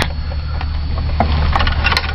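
Seatbelt webbing being pulled out and drawn across a body-armor vest, a rustling scrape with a few faint clicks, over a steady low hum.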